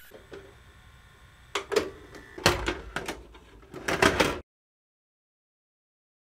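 A run of irregular sharp knocks and clunks, several in quick pairs, loudest about two and a half seconds in, that cuts off abruptly into silence.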